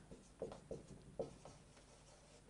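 Marker writing on a whiteboard: several short, faint strokes as words are written out.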